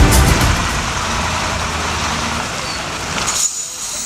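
KAMAZ dump truck's diesel engine running as the truck creeps forward at low speed, with a short sharp hiss of its air brakes about three and a half seconds in.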